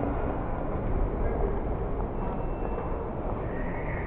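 Steady background noise of a large indoor hall, with faint, indistinct voices in it.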